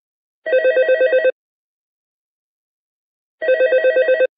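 A telephone ringing twice, each ring a rapid trill lasting about a second, about three seconds apart: an incoming call that has not yet been answered.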